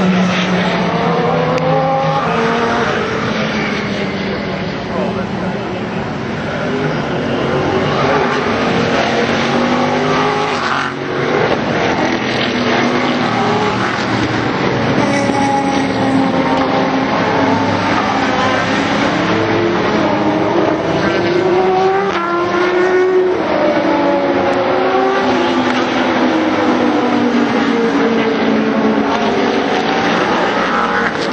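Sports-prototype and GT race cars passing one after another, their engines rising and falling in pitch as they shift gears through the corner. Spray hiss from the wet track runs underneath.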